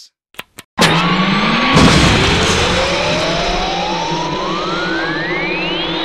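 Two quick clicks of a remote's button, then a cartoon sound effect of being launched upward: a loud rumble with a whistle that rises steadily in pitch for about five seconds, and a crash about two seconds in.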